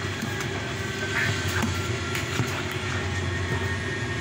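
Steady low rumbling background noise, with a few faint light clicks and scrapes as a plastic whey-protein tub is handled and a scoop taken out.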